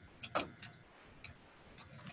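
Computer keyboard keystrokes, slow and sparse: one louder key click about a third of a second in, then a few faint clicks.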